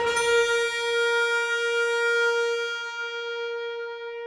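Oboe holding one long, steady, unwavering note, heard almost alone. Its brighter upper overtones fade after about three seconds while the note itself carries on.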